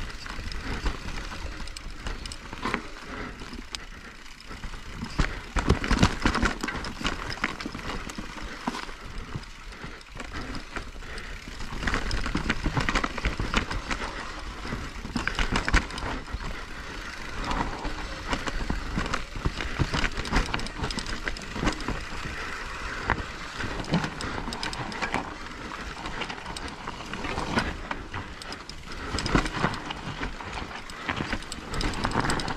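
Specialized Turbo Levo e-mountain bike ridden over rough dirt singletrack: tyres on dirt with a steady run of clattering knocks and rattles from the bike over bumps, louder over rougher stretches about six seconds in and again from about twelve seconds.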